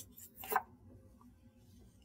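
A short scrape on a whiteboard about half a second in, with a fainter touch at the start, as the board is worked with an eraser and marker; otherwise faint room tone.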